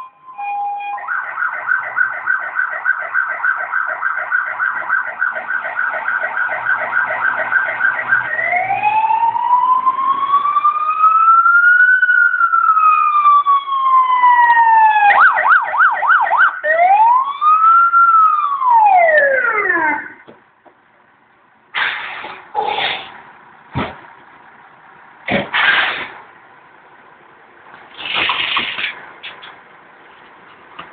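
Fire engine siren: a fast repeating warble for several seconds, then a slow rising-and-falling wail, a brief run of fast yelps and another wail, cutting off suddenly about twenty seconds in. A few short bangs and bursts of noise follow.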